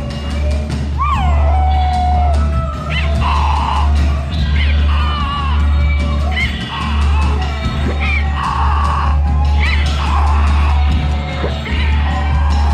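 Live experimental noise-rock: a loud, steady low drone with drums under it, and short sliding vocal yells and whoops over the top, repeating about every second.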